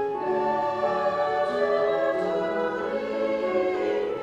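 Mixed choir of men and women singing together in parts, holding long notes that shift from chord to chord.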